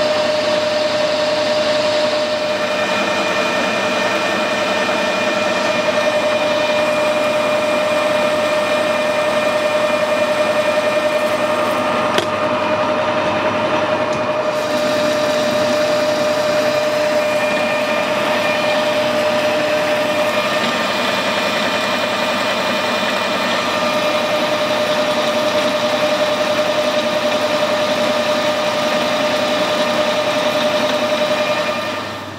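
Metal lathe running at a constant speed with a steady whine, its carbide-insert tool turning an aluminium engine spacer. There is a single brief click about twelve seconds in.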